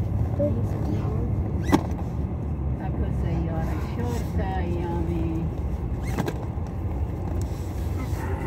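Car driving along a city road, heard from inside the moving car: a steady low road-and-engine rumble. A single sharp click sounds just under two seconds in, and a softer one about six seconds in.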